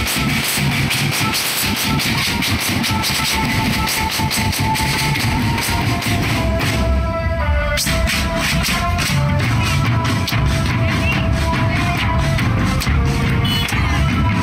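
Marching drum band playing: rapid snare drum strokes and bass drum beats under a melody of held notes that step up and down in pitch.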